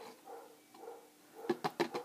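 A dog barking a few short times near the end, alerting to someone at the door.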